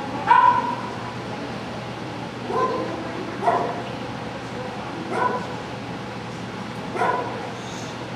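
A dog barking and yipping, five short barks a second or two apart, the first the loudest.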